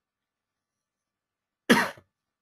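A person coughing once, a short, sudden burst near the end.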